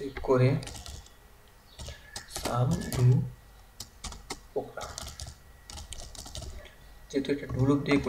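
Typing on a computer keyboard: a short run of scattered keystroke clicks, with a man talking between them.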